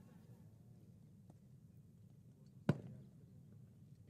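Faint background with one short, sharp click about two-thirds of the way through.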